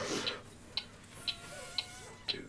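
Faint clock-style ticking from a timer, a sharp tick about twice a second, starting about three-quarters of a second in.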